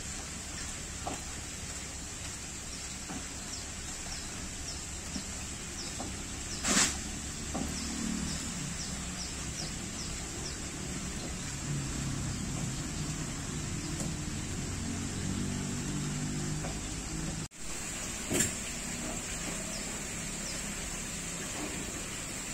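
Shop room ambience: a steady hiss with a constant high whine, with a run of faint chirps repeating about twice a second at the start and again near the end, and a low murmur through the middle. Two short knocks stand out, one about a third of the way in and one near the end, just after a brief dropout.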